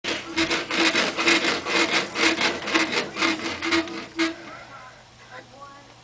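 Doorway baby jumper creaking and rubbing rhythmically with each bounce, about two strokes a second; it stops about four seconds in.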